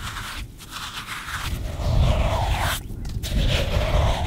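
A hand digging into wet beach sand at a clam hole, a gritty scraping and crunching that swells about a second and a half in, breaks off briefly near three seconds, then goes on.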